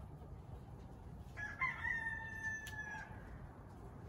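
A rooster crowing once: a single faint call of about a second and a half that holds its pitch and sinks slightly toward the end.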